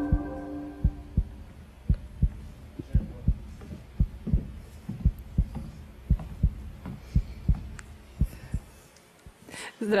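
Heartbeat sound effect: paired low thumps, about one pair a second, stopping a second or so before the end.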